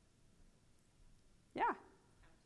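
Quiet room tone, then about a second and a half in a single short spoken "yeah" with a rising-then-falling pitch.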